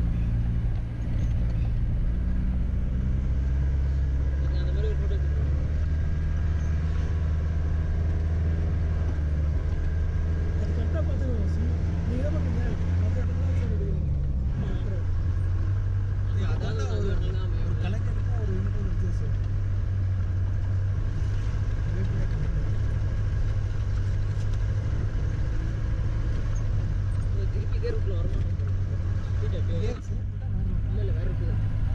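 Tata Sumo's engine and road noise heard from inside the cabin on a rough dirt mountain road: a steady low drone. About halfway through, the engine note glides down and settles at a new pitch.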